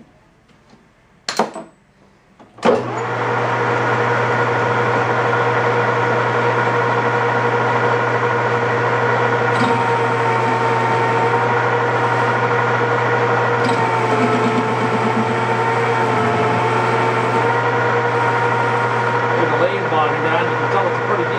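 A 13x40 metal lathe is switched on after a couple of clicks about three seconds in and runs steadily, a low motor hum under a whine of gear tones. The tones dip slightly for a few seconds about two-thirds of the way through, as the cutting tool bevels the inside edge of a bushing sleeve.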